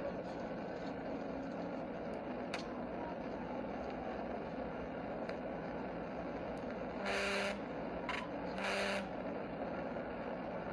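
Steady road and engine noise of a police cruiser at highway speed, heard from its dashcam inside the car. A horn blasts twice near the end, a half-second blast followed by a shorter one about a second and a half later.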